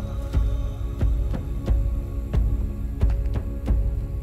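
Dark background music: a sustained droning chord with a deep, regular low thump about every two-thirds of a second.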